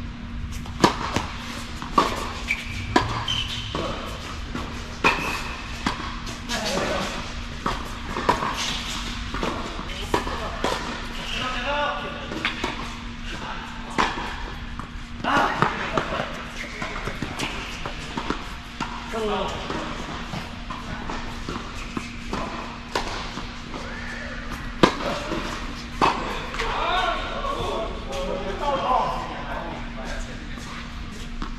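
Tennis balls struck by racquets and bouncing on an indoor hard court during a doubles rally, opening with a serve: a series of sharp, irregularly spaced pops that echo in a large hall. Voices and a steady low hum run underneath.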